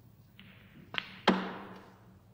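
Two sharp knocks of snooker play about a third of a second apart: a cue striking the cue ball, then a ball striking another ball. The second is louder and rings on briefly, over a faint steady low hum.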